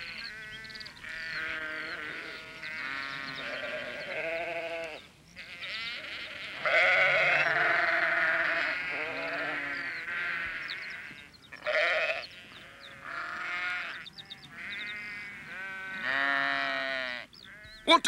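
Several sheep bleating over and over, overlapping calls with a quavering pitch, loudest about seven seconds in.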